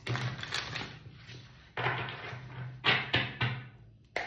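A deck of tarot cards being shuffled by hand, in several short bursts of cards sliding and flapping against each other.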